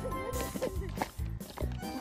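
Background music with a steady beat, with a brief sliding, voice-like call over it in the first second.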